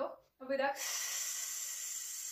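A woman's long, steady breath out hissed through the lips, starting under a second in after a short spoken count word. It is a paced exhale during a strength exercise.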